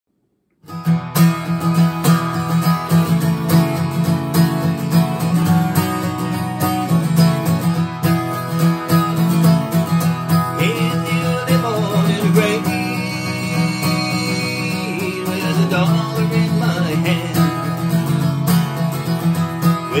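A solo acoustic guitar plays a folk-country song's opening, its chords picked and strummed in a steady rhythm, starting about a second in. A man's singing voice comes in at the very end.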